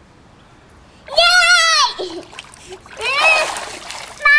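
Water splashing as a small child is lifted out of a pond, with her high wordless squeal about a second in and a second, falling squeal near the end.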